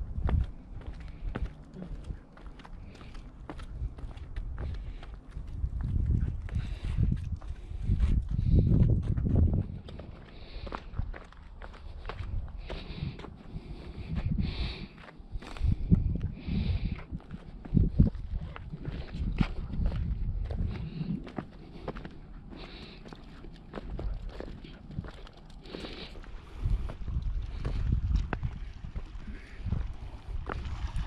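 Footsteps and shoe scuffs on bare sandstone rock during a walk, with irregular low rumbling buffets on the microphone.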